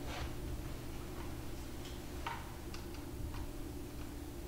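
Faint, scattered clicks and light rustles of paper being handled, about half a dozen small sounds, over a steady low room hum.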